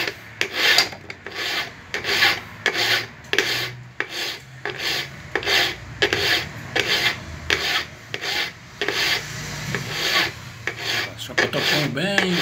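Steel flat file rasping against the inner cutting edge of a pair of pliers being sharpened, in repeated strokes at about two a second.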